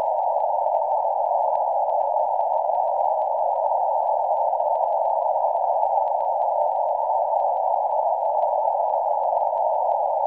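A steady, harsh electronic drone of narrow midrange hiss with faint crackling over it, the distorted sound of a cursed videotape, held at an even level throughout.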